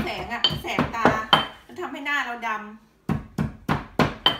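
Stone pestle pounding in a stone mortar, about four strikes a second, with a short break about three seconds in before the pounding resumes. A woman's voice talks over the first three seconds.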